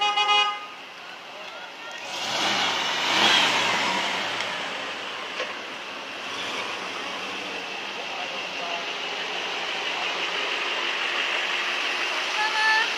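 Vehicles driving slowly past, with a short car-horn toot right at the start. A swell of engine and tyre noise comes a few seconds in as a pickup truck passes close, then a steady run of passing traffic.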